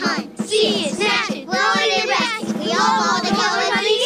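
A children's song: voices singing phrase after phrase about an Easter egg hunt over a musical backing track.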